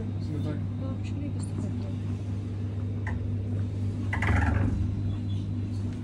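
Steady low machine hum, with faint background voices and a brief louder sound about four seconds in.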